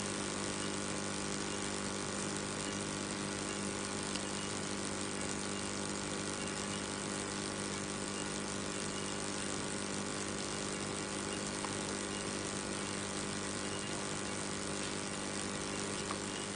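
Steady electrical hum made of many even tones over a faint hiss, with two faint clicks about four seconds in and near the twelfth second.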